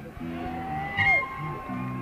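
Live band playing a slow blues vamp: a held low chord, a short gap, then another held chord near the end, with a thin steady high tone running above from about a second in.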